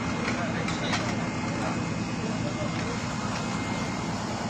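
Engine of a well-digging hoist running steadily at a constant speed, a low, even rumble, with voices of people around it.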